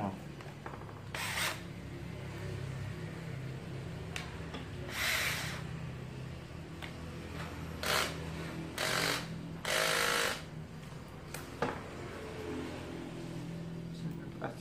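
Makita cordless drill-driver motor running steadily at a faster speed setting, a low hum that stops near the end. Several short, louder bursts of noise occur over it.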